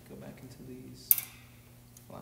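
A single sharp clink of something hard being struck, about a second in, with a brief ring after it.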